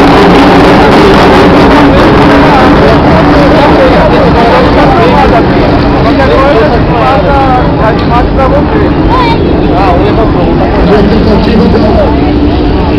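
Indistinct voices of several people talking over a steady low hum of an idling vehicle engine, with dense noise throughout.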